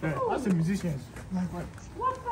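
Speech only: excited voices exclaiming, in words the recogniser did not catch.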